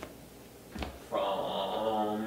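A man's voice drawing out one steady, level-pitched vowel sound for about a second, starting about a second in, with a faint tap just before it.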